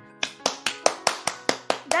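Rapid hand clapping, about five claps a second, starting a quarter-second in, over steady background music.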